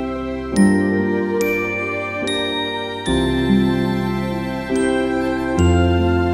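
Slow instrumental lullaby: soft bell-like chimes strike a gentle melody, about one note a second, over sustained low chords that change every few seconds.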